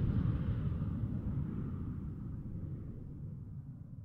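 The song's last guitar chord dying away over a low rumble, fading steadily until it is faint.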